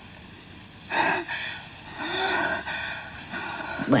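Soft, breathy laughter from a young woman, in two short bouts about a second apart.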